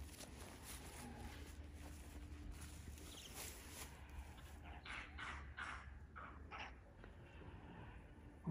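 Faint outdoor quiet with a low steady rumble, broken about five seconds in by a few short, soft rustles in dry grass.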